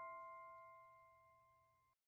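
The ringing tail of a struck bell-like chime, the final note of a closing music sting. It fades away over about a second, and faint tones linger until the sound cuts off abruptly near the end.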